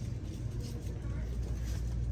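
Store room tone: a steady low hum with faint rustling.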